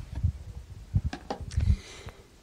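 Irregular low thumps and a few soft clicks of handling noise close to the microphone, the loudest about one and a half seconds in.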